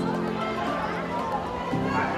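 Crowd voices in a busy temple hall, with music of long held notes over them that change to a new note near the end.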